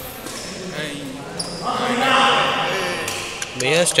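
Badminton doubles rally: a racket strikes the shuttlecock a couple of times early on, then loud men's shouting and calling as the point ends.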